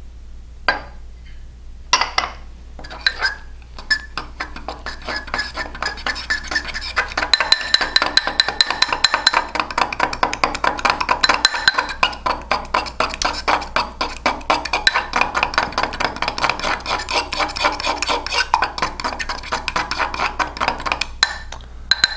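Metal fork beating egg and melted butter in a ceramic mug, the tines clinking quickly against the mug's sides. A few separate clinks come first, then fast continuous clinking from about six seconds in until near the end.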